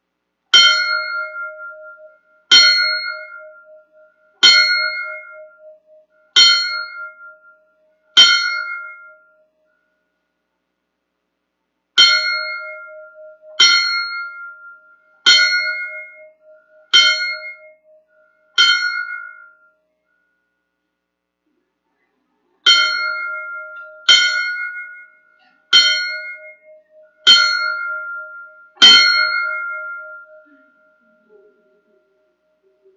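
A fire service bell tolled in the traditional 5-5-5: three sets of five measured strikes about two seconds apart, each ringing out and dying away, with a pause of a few seconds between sets. The signal honours a firefighter who has died.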